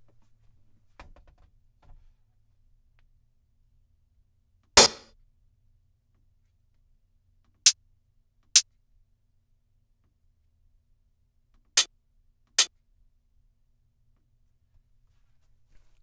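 Closed hi-hat drum samples auditioned one at a time: five short, separate hits. One comes about five seconds in, then two pairs of hits less than a second apart. Two faint clicks come about one and two seconds in.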